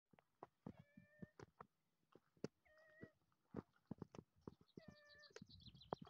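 A domestic cat meowing three times, faintly, about two seconds apart, with sharp clicks scattered between the calls.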